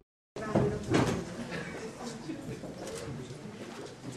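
Room noise of a meeting: a low murmur of voices with scattered clicks and knocks, after a brief moment of dead silence at the start.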